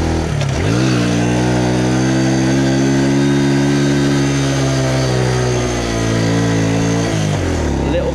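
Small step-through motorbike engine under throttle on an uphill ride: its note dips and climbs again about half a second in, holds steady and high, then drops sharply near the end as the throttle is eased.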